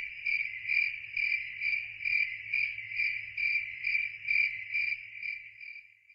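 A cricket chirping steadily, about two chirps a second, fading out near the end.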